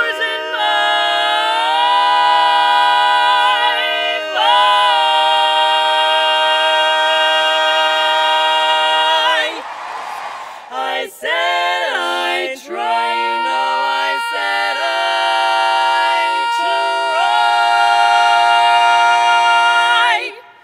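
Women's barbershop quartet singing a cappella in close four-part harmony, holding long sustained chords. About halfway through the singing drops out for a moment, then a new phrase picks up and builds to another long held chord.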